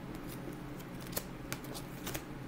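Tarot cards being handled: a handful of short, crisp card snaps and clicks, the sharpest about a second in, over a low steady hum.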